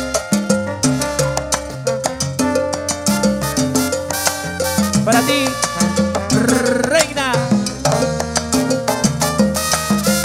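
Live salsa band playing an instrumental passage: a trumpet and trombone section plays over a steady rhythm section beat.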